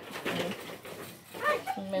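A dove cooing in short low calls, with a voice starting right at the end.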